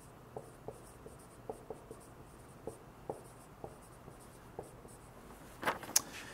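Dry-erase marker writing on a whiteboard: faint, irregular short squeaks and taps as the strokes of each letter are drawn. A brief louder noise comes near the end.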